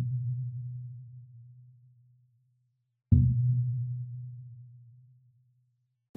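Logo intro music: a deep, low tone fades out over the first two seconds. About three seconds in, a second low tone strikes suddenly and dies away over about two seconds.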